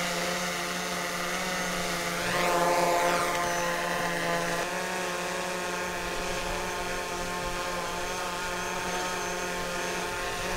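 DJI Mavic quadcopter hovering close by, its four propellers making a steady whine of many tones at once. The whine swells and rises in pitch, then falls back, about two to three seconds in.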